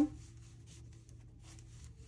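Faint rubbing and light scratching of knitting needles and yarn as knit stitches are worked.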